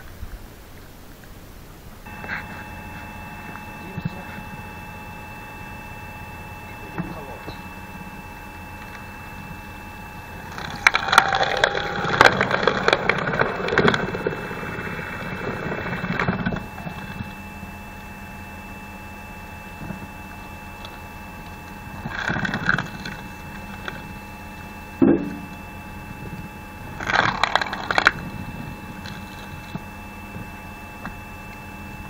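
The 5.5 kW electric motor of a homemade screw log splitter comes on about two seconds in and runs with a steady whine. Its threaded cone bores into logs, and the wood creaks and cracks as it splits, loudly for several seconds in the middle and again in shorter spells near the end.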